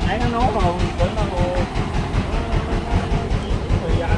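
A small engine running with a steady, rapid chugging throb. A voice is heard briefly in the first second or so.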